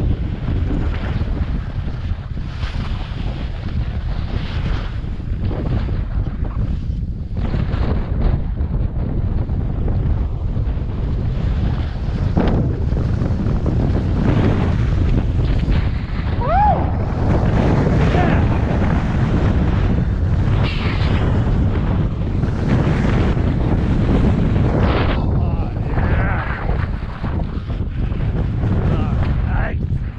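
Wind buffeting the microphone of a camera carried by a downhill skier: a loud, steady low rumble. Through it come repeated hissing scrapes of the skis on spring snow as he turns.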